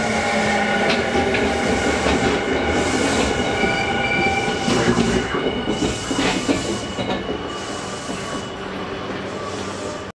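Tokyu 5000 series electric train running past and slowing on its arrival: steady rolling noise with thin high-pitched tones and irregular clacks from the wheels, fading gradually as the last car goes by.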